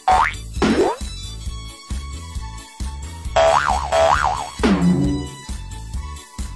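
Comedy background music with a steady, thumping bass beat, laid over with cartoon sound effects: a quick whistle glide up and then down just after the start, and a tone that wobbles up and down about halfway and then slides down.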